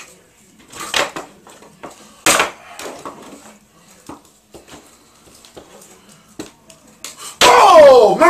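Plastic wrestling action figures being moved and slammed by hand on a toy ring: two louder sharp knocks early on, then lighter clicks and scuffs. Near the end a loud drawn-out vocal exclamation begins.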